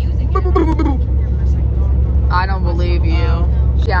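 Steady low drone of a moving charter bus's engine and road noise inside the passenger cabin, with a voice breaking in twice.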